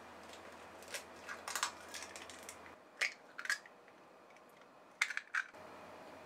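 Eggs being tapped and cracked open against a glass mixing bowl: short sharp cracks and clicks in small clusters, at about one second, three seconds and five seconds in.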